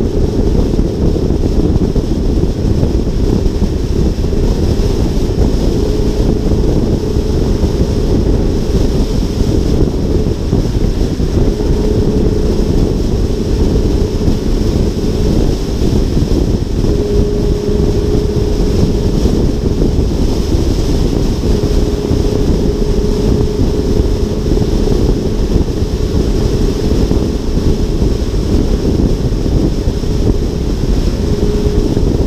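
Loud, steady wind rush buffeting the microphone, mixed with tyre and road noise from a car cruising at freeway speed, with a faint hum that comes and goes.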